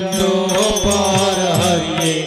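Devotional bhajan music: a man singing over a harmonium's held chords, with a few percussion strokes.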